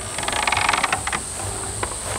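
Wooden hand cart rattling and clattering for about a second as it is tipped up on its wheels, followed by a couple of single knocks. A steady high insect drone runs underneath.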